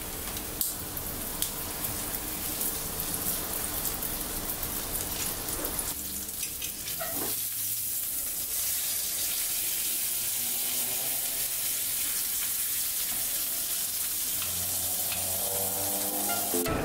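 Crumb-coated chicken cutlet frying in oil in a stainless steel pan: a steady sizzle with many small crackles, a little louder from about halfway.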